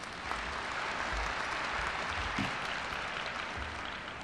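Large audience applauding. The applause starts abruptly, holds full for a couple of seconds and tapers off near the end.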